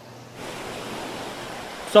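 Sea waves in the shallows, an even rushing hiss that begins about half a second in.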